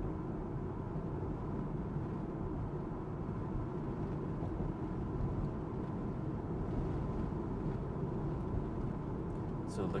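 Steady road and tyre noise inside the cabin of an electric Tesla Model 3 cruising at about 40 mph: an even low rumble with a faint steady high tone and no engine sound.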